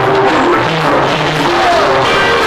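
Live band music led by electronic keyboards, loud and steady.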